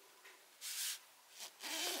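A short papery rustle, about half a second long, of a hand rubbing and pressing on folded printer paper, with a fainter brush of the hand just before speech resumes.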